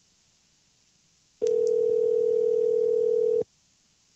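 Telephone ringback tone on an outgoing call: one steady two-second ring tone, starting about a second and a half in and cutting off sharply. This is the line ringing at the called end before anyone picks up, heard over faint line hiss.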